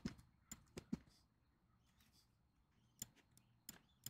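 Faint clicks of a computer mouse over near silence: a quick cluster of about five in the first second, then two more near the end.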